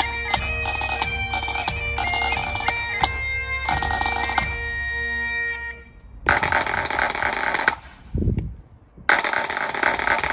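Great Highland bagpipes playing a tune over steady drones, with bass and snare drum beats, until the pipes stop about six seconds in. Then two loud snare drum rolls follow, with a deep thud between them.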